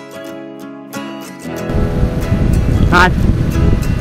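Acoustic guitar music, which cuts off about a second and a half in to a loud, steady rush of wind and road noise on the microphone of a moving motorcycle. A voice comes in briefly about three seconds in.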